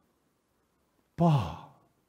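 A man's voice saying the single word "Pa" about a second in, drawn out with a falling pitch and a breathy, sigh-like tone.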